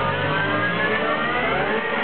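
Electric guitar sustaining a note that glides steadily upward in pitch, over the bass and drums of a live blues-rock band.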